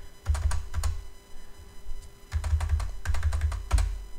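Typing on a computer keyboard: several short runs of quick keystrokes with gaps between them, one key pressed over and over to key in a string of zeros.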